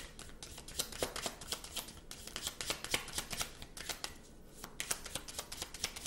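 A deck of reading cards being shuffled by hand: a run of quick, irregular card clicks, with a brief lull a little after four seconds in.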